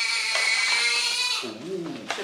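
Newborn baby crying: one long, high wail that stops about one and a half seconds in, then a short lower cry. The baby is calling for its mother.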